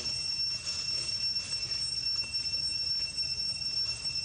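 Steady, high-pitched drone of cicadas, a continuous whine that holds one pitch without a break.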